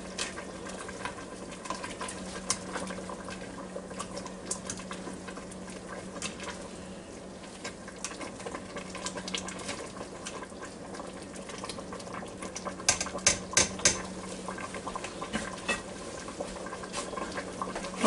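A plastic spoon stirring and pushing dry rotini pasta down into boiling soup in a Ninja Foodi's inner pot: scattered scrapes and clicks against the pot, with a cluster of louder knocks about 13 seconds in, over a steady low hum.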